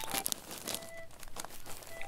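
A large sheet of paper, the wrapping of a despacho offering bundle, crinkling and rustling as it is folded by hand, in short irregular crackles.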